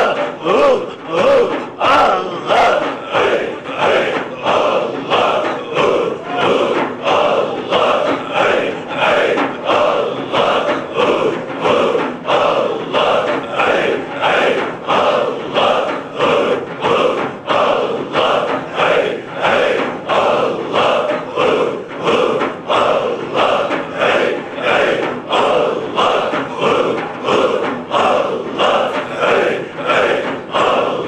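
A large group of men chanting dhikr together in a steady, pulsing rhythm, with frame drums beating along.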